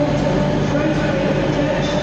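Train running nearby: a loud, steady rumble and hum with several held tones.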